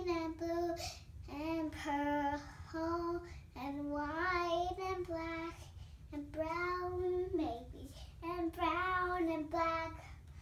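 A young girl singing unaccompanied, in short phrases of long held notes with brief breaks between them.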